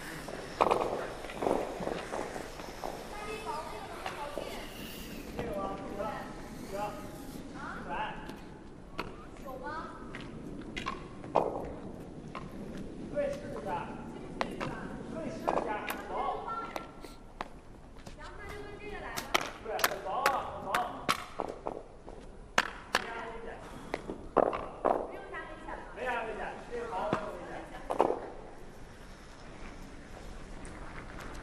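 Curling-arena ambience: indistinct voices of players talking on the sheets, with occasional sharp knocks scattered through.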